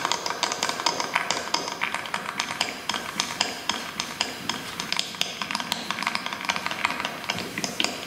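Prepared guitar played percussively: a quiet, dense run of irregular clicks and taps, several a second.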